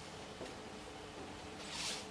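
Quiet room tone with a faint steady hum; near the end, a short scratchy hiss of a marker stroke on a whiteboard.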